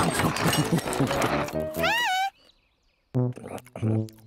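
Cartoon soundtrack of music and effects with wordless character voices. A busy stretch gives way to a short voice that rises and falls in pitch about two seconds in. After a brief gap, another voice comes in near the end.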